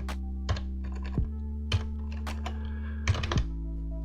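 Computer keyboard keystrokes: a few scattered clicks, then a quick cluster of them a little after three seconds, over background music with sustained low notes.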